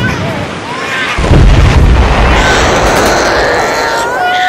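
A loud explosion about a second in, its rumble carrying on, with people wailing and crying over it: a laid-over soundtrack of war and killing.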